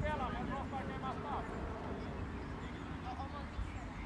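Faint, distant voices of children calling across an outdoor football pitch, mostly in the first second and a half. A low, steady rumble sits under them.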